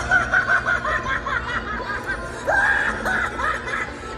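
Clown animatronic's recorded cackling laugh played from its built-in speaker, in quick runs of 'ha-ha' syllables: one at the start and another about two and a half seconds in.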